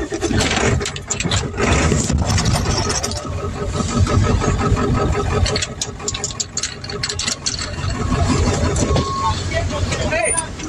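Car engine being started and kept running, heard from inside the car's cabin.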